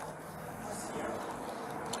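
Steady low hum of car engines and traffic, with no sharp sounds.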